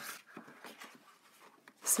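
Faint rubbing and rustling of a coloring book handled and turned over by hand: fingers sliding on its card cover and paper band.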